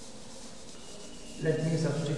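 Blackboard duster wiping chalk off a blackboard: a soft rub, then a louder stroke beginning about a second and a half in.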